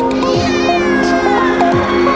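Electronic background music with a cat's meow laid over it: one long call that starts high and falls steadily in pitch, fading near the end.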